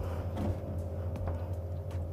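A steady low hum with a few faint light taps as stripped three-core cable is laid down on a wooden workbench.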